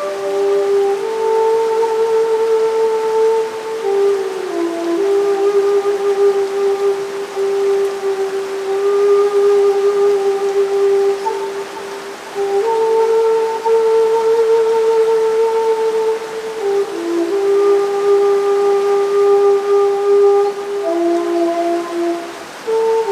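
Slow, meditative melody of long held notes on a low shakuhachi (bamboo end-blown flute), with a short pause about halfway and a steady hiss beneath.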